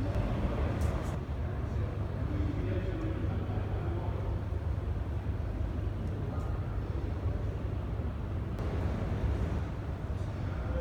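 Ambience of a large indoor hall: a steady low rumble with faint, distant voices of people talking and a few light clicks.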